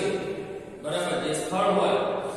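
A man's voice in slow, drawn-out, chant-like phrases, with a brief pause about half a second in.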